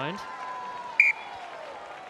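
Rugby referee's whistle: one short, sharp blast about a second in, stopping play as the ball goes into touch. Stadium crowd noise runs low behind it.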